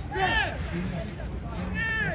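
Match-day shouting: two high, arching calls, one just after the start and one near the end, over a murmur of other voices.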